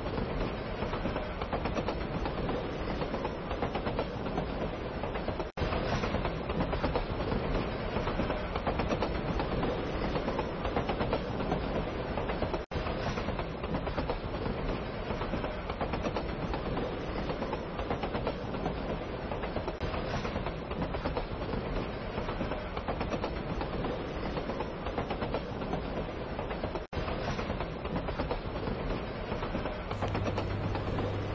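A train running along the track, a steady noise of wheels and carriages on the rails. It breaks off for an instant three times.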